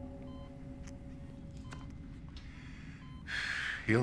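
A man's loud breath, a sharp rush of air about three seconds in, just before he speaks. Underneath it, a medical monitor beeps faintly about every second and a half over a low room hum.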